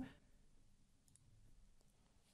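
Near silence broken by a few faint computer mouse clicks.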